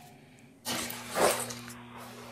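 Rushing, breath-like noise on the presenter's microphone, loudest a little after a second in. With it comes a steady electrical hum that switches on suddenly about two-thirds of a second in.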